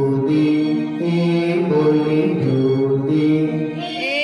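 Chant-like singing of a children's action song: a voice holding short, level notes that step up and down in a simple repeating tune.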